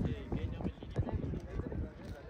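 Quiet murmured prayer voices, with a few soft, irregular knocks.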